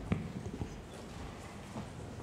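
Footsteps of shoes on a wooden stage floor: a few separate knocks, the loudest just after the start.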